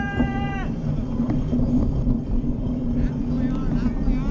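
Steady low rumble with wind on the microphone. A voice's long, drawn-out call ends about half a second in.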